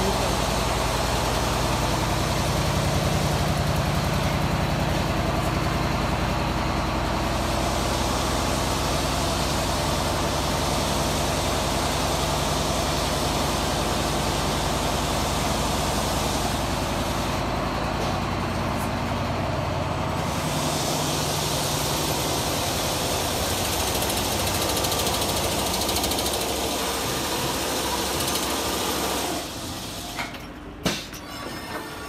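Mammut VM7 single-needle lockstitch quilting machine running: a loud, steady mechanical noise with a low hum, dropping in level shortly before the end.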